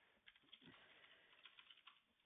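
Faint computer keyboard typing: a run of quick, irregular key clicks.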